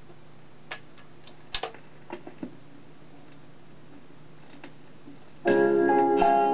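Portable record player's autochanger cycling between singles: a few mechanical clicks and clunks over a faint steady hum. About five and a half seconds in, the next record starts playing loudly with a piano intro.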